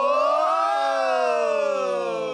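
Voices holding one long final sung "ho" at the end of a chant, the pitch slowly rising and then gently falling.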